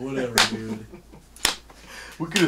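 Two sharp finger snaps about a second apart, over a low voice.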